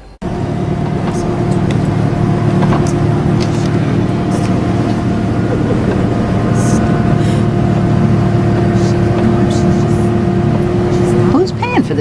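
Motor vehicle driving at a steady speed: a constant engine drone with a steady hum and road rumble, cutting in abruptly just after the start.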